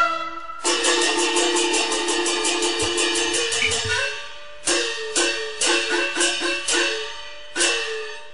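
Instrumental interlude of Cantonese opera music on a plucked Chinese string instrument: a fast tremolo held on one note for about three seconds, then single plucked notes that slide in pitch.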